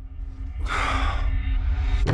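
A man's heavy sigh about half a second in, over a low, droning film score whose rumble builds in loudness.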